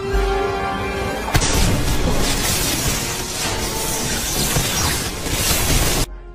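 Film soundtrack: orchestral score, then about a second and a half in a sudden loud crash, followed by a dense wash of crashing, shattering sound effects under the music.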